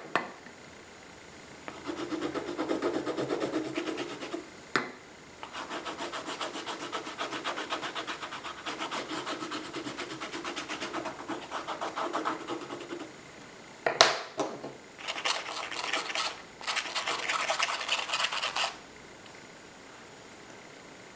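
Green water-soluble crayon stick rubbed quickly back and forth on textured watercolour paper: scratchy scrubbing strokes in three long runs, with two sharp knocks between them, the louder about two-thirds of the way through.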